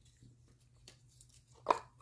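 Faint, scattered clicks and knocks of small wooden peg stamps being handled in a small cardboard box, with one louder short sound near the end.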